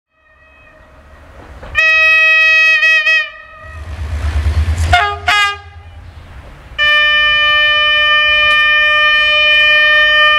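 Train horns: a long horn blast about two seconds in, a low rumble swelling, two short toots, then a steady, long horn blast held from about seven seconds on.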